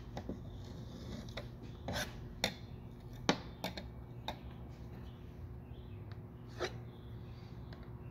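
Metal knife blade clicking and scraping against window glass and the wooden sash in scattered short strokes while excess glazing putty is trimmed away. A steady low hum runs underneath.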